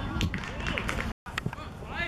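Young footballers' voices calling out on an outdoor pitch, with a few sharp knocks. The sound cuts out completely for a moment a little past halfway.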